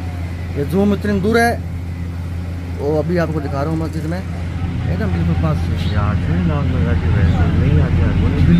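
Untranscribed voices of people talking, over the steady low hum of a vehicle engine; the voices grow louder near the end.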